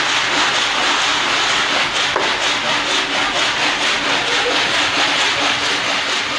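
Dried beans rustling and rattling in plastic basins as they are scooped and shaken by hand, a continuous dense grainy hiss.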